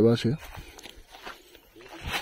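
A man's voice trails off in the first moment, then quiet footsteps on dirt and grass, with faint rustling.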